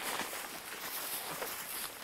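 Footsteps of several hikers walking through long grass, irregular soft steps over a steady hiss.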